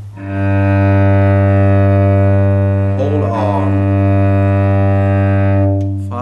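A cello's open G string bowed in one long, steady sustained note, starting just after the opening and fading away near the end.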